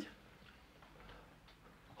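Near silence: room tone, with a few faint ticks.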